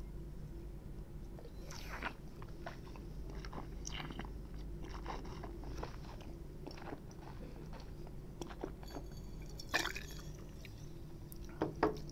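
Faint wet mouth sounds of a taster working a sip of white wine around the mouth: many small clicks and swishes, with two louder sharp noises, one about two seconds in and one near the end. A steady low hum runs underneath.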